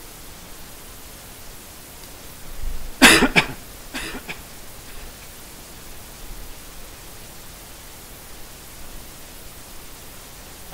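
A person coughing, a loud cough about three seconds in and a smaller one about a second later, over a steady hiss of room noise.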